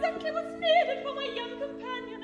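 Operatic singing with wide vibrato in short phrases, over steady held chords from the orchestra.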